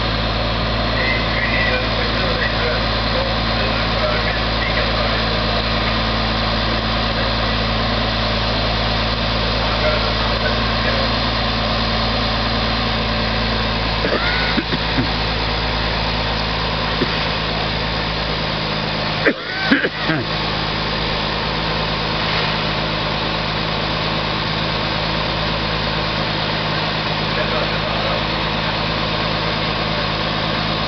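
Fire engine's engine idling as a steady drone, with a couple of brief knocks about two-thirds of the way through.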